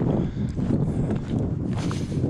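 Footsteps on a gravel track, with wind rumbling on the microphone.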